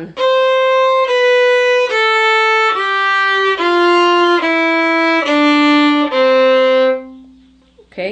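A fiddle plays a C major scale descending one octave: eight evenly bowed notes stepping down from C to the low C on the G string. The last note is held a little longer and stops about a second before the end.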